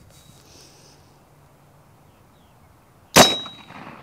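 .45-calibre AirForce Texan big-bore air rifle firing once about three seconds in: a single sharp report with a brief high-pitched ring that fades quickly.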